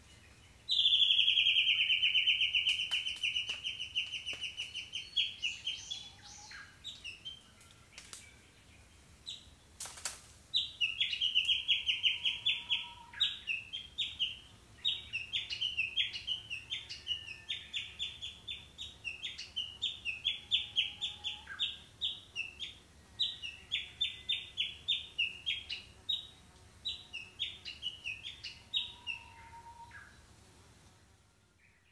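A bird calling in rapid, high trills. One long trill comes in the first few seconds, then after a pause a run of short trills repeats about every half second. A single sharp click sounds shortly before the trills resume.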